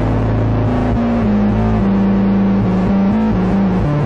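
Live rock band playing an instrumental passage on loud, distorted electric guitar and bass, the low notes stepping between a few pitches.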